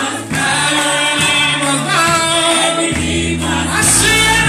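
A group of voices singing a gospel worship song over sustained low accompaniment notes that change a couple of times.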